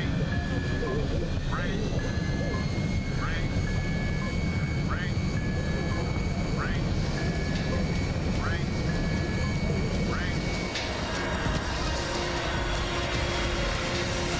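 Loud low rumble of an airliner cabin during an emergency descent, with a repeating electronic warning alarm over it: a short steady beep, then a rising chirp, about every second and a half. The rumble and the alarm cut off together about eleven seconds in.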